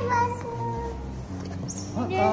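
A domestic cat meows briefly at the very start over edited-in background music, which carries on with steady low notes.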